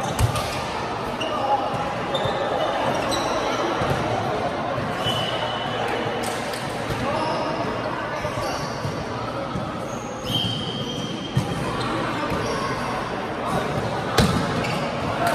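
Light volleyball being played in a large sports hall: a few sharp slaps of hands striking the light plastic ball, just after the start, about eleven seconds in and at the end, with brief high squeaks of shoes on the court floor scattered through, all echoing in the hall.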